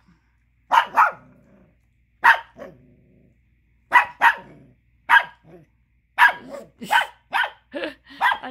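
Chihuahua puppy barking repeatedly in short runs of one to four sharp barks with brief pauses between, the longest run near the end. He is barking to get a bone that another dog is chewing.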